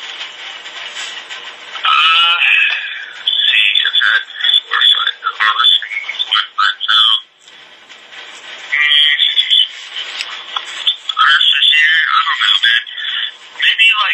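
A man's voice talking in broken phrases with pauses, heavily garbled and warbling, tinny and with no clear words: badly distorted speech.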